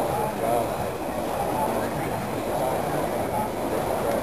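Indistinct chatter of distant voices over a steady low rumbling background noise.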